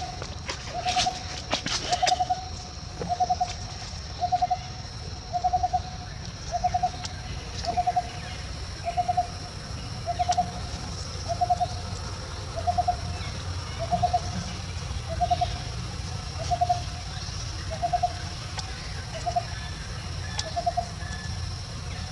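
A bird calling the same short, pulsed note over and over at a steady pitch, about once every second and a bit.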